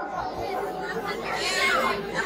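Low, indistinct chatter of voices, well below the level of the stage dialogue around it.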